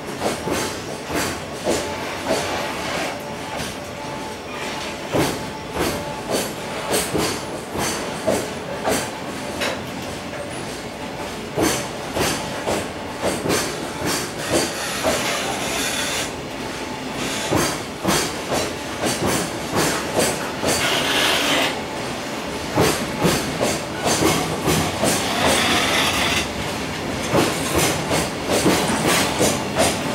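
Freight container wagons rolling past at low speed as the train accelerates away, their wheels clattering in a quickening run of clicks and knocks over the rail joints on top of a steady rolling rumble.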